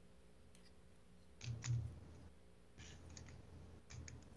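Faint clicks and knocks of a plastic Transformers action figure being handled, in three short clusters: about a second and a half in, near three seconds, and at the end.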